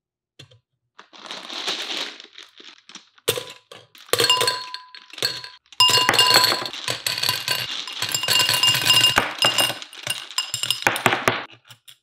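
A bag of gumballs poured into a glass gumball-machine globe: a dense, continuous clatter of balls hitting the glass and each other, with the glass ringing. It builds from about four seconds in and stops shortly before the end.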